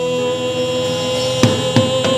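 Live worship band holding a sustained keyboard chord, with two drum hits near the end.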